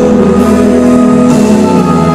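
Live pop band music in a large hall, sustained chords with little or no singing.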